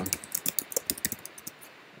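Typing on a computer keyboard: about a dozen quick keystrokes over a second and a half, entering a short line of text.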